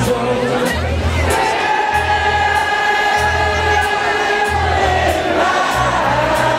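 Live rock band playing: bass guitar notes, electric guitars and a steady cymbal beat about twice a second, with voices holding one long note through the middle and a crowd singing along.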